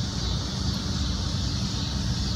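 Steady outdoor street background: a low traffic rumble with a high hiss, and a faint steady engine-like hum that comes in about half a second in.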